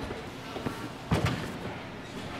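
A gymnast's vault contact: a light knock, then a louder bang about a second in as she strikes the springboard and vault table.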